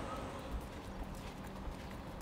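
Footsteps of a man walking on stone paving, about two steps a second, over a faint steady hum.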